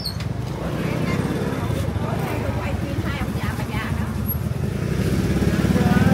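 A small motorbike engine running at low speed close by, growing louder near the end as it comes nearer, over faint market chatter.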